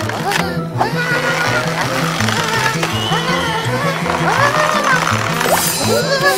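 Cartoon background music with a pulsing bass line, over repeated wordless cries that rise and fall in pitch from a frightened cartoon character.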